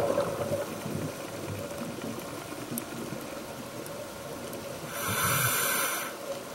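Scuba diver's regulator breathing heard underwater through the camera housing: a muffled bubbling rumble, then a louder hissing breath about five seconds in that lasts about a second.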